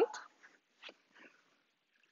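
Faint handling noise of a rubber exercise band being picked up and gripped in both hands, a soft rustle with one small click a little under a second in.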